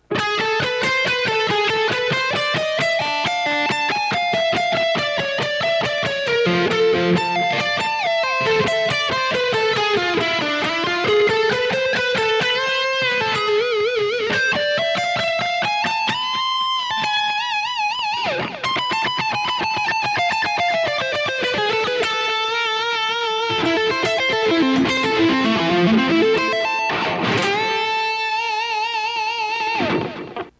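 Distorted seven-string electric guitar, a Kiesel DC700 tuned a whole step down, played through a Kemper amp profiler. It plays a fast alternate-picked metal lick at moderate tempo: rapid runs of single notes that climb and fall, with vibrato on a few held notes. Near the end there is a swoop down and back up in pitch, and the lick ends on a held note with vibrato.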